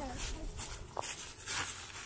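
Faint rustling and scuffing of dry leaves underfoot, with a brief faint child's voice about a second in.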